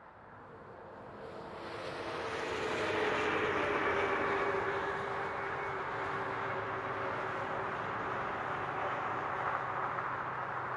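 Steady vehicle noise, a rushing sound with a faint low hum, fading up over the first three seconds and then holding steady.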